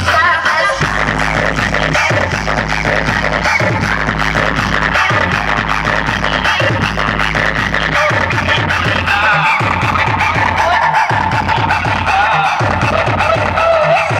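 Loud Indian DJ dance music played through a truck-mounted stack of large speaker cabinets, with a heavy bass line and a steady repeating beat.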